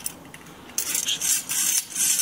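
Stainless steel chimney-pipe wall bracket being handled: its metal clamp band and adjustable arm rattle and scrape, metal on metal, in irregular bursts starting a little under a second in.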